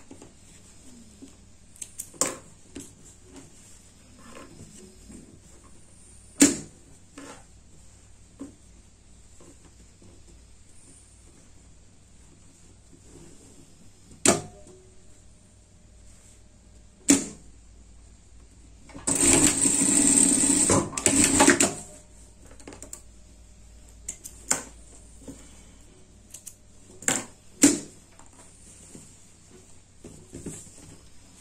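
Industrial straight-stitch sewing machine running for about three seconds in two short spurts, past the middle, stitching along a seam (topstitching a shoulder seam). Single sharp clicks and knocks of the machine and fabric handling come at scattered moments before and after.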